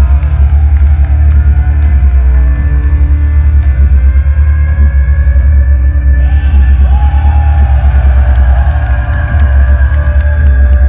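Heavy metal band playing live at very high volume, with heavy bass, drums and guitars and a held melody line on top; a sliding melody comes in about six and a half seconds in. Heard from inside the audience, bass-heavy and loud.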